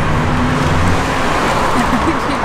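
Street traffic with a motor vehicle's engine running close by, a steady low hum over road noise.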